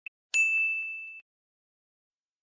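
A single bright bell-like ding sound effect, preceded by a tiny short pip, striking sharply and ringing as one clear high tone that fades over about a second before cutting off.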